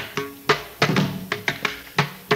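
Mridangam played on its own: sharp strokes in an uneven, quick rhythm, several of them ringing with the pitched tone of the tuned drumhead.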